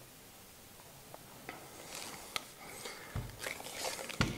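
Handling of a Beretta Model 1937 experimental semi-auto rifle: a few faint, sharp metallic clicks from its parts being moved, then handling noise and a soft low thump as the rifle is turned over.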